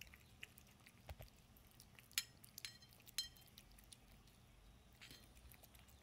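A cat eating chunky wet cat food from a small stainless-steel bowl: faint, scattered chewing clicks, with a couple of short metallic clinks against the bowl about two and three seconds in.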